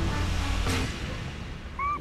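Background music with a steady low bass, and a short high sliding tone near the end.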